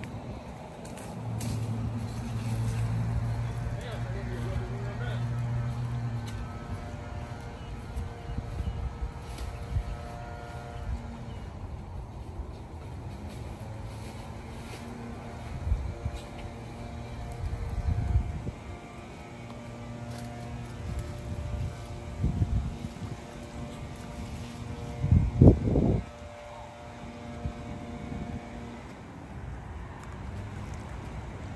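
A motor's steady low hum, holding one pitch and rising and falling a little in level, with several short low thumps on the microphone, the loudest pair near the end.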